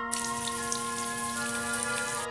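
Water from a bathroom sink tap starts suddenly a moment in and runs as a steady splashing hiss over hands and a paintbrush into the basin. Background instrumental music plays underneath.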